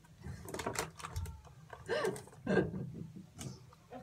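Muffled mouth sounds from a child pushing a marshmallow into her mouth: a few sharp clicks and smacks about half a second in, then short mumbled, stifled voice sounds through the full mouth around two seconds in.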